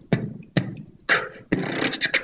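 A teenager beatboxing into a microphone: a few spaced vocal drum hits, then about a second and a half in a fast, unbroken run of beats.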